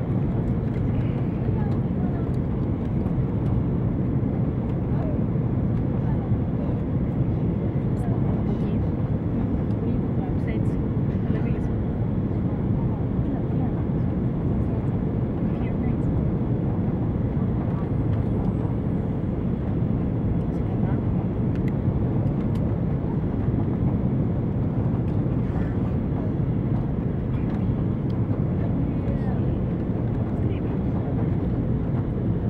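Steady low drone of an Airbus A330-300 airliner's engines and airflow heard inside the passenger cabin during the approach to landing, unchanging throughout.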